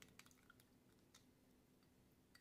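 Near silence, with a couple of faint ticks at the very start from a plastic spoon stirring gel in a small glass bowl.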